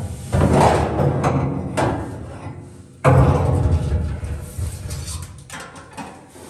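Hollow sheet-metal fuel tank being set down and shifted in the trunk's metal floor. Two booming knocks, one just after the start and one about three seconds in, each ringing on and dying away.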